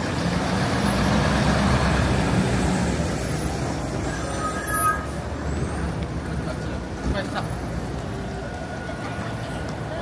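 Fire engine's diesel engine running as the truck creeps past, loudest in the first few seconds and then fading, with a short high squeal about halfway through. Street chatter carries on underneath.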